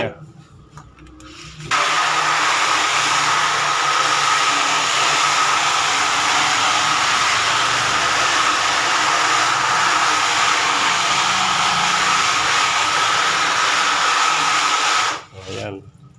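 Hose spray nozzle jetting water onto the back of an exposed screen-printing screen: a steady hiss with a thin whistle in it, starting about two seconds in and cutting off about a second before the end. This is the wash-out after exposure, softening the emulsion so that the stencil opens up.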